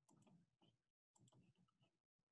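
Near silence: faint, irregular clicking over room tone, with a brief drop to dead silence about a second in.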